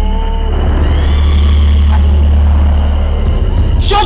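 A loud, steady low rumbling drone with a thin, faint high whine held above it, and a few brief gliding tones in the first half-second.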